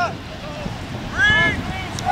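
A high-pitched shout from across the field about a second in, with fainter calls around it, over wind noise on the microphone.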